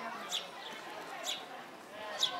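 Faint background chatter of people, with a short high chirp repeating about once a second.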